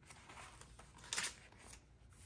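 A page of a thick Midori MD paper notebook being turned by hand: paper rustling, with one sharper, louder swish a little after a second in as the page flips over.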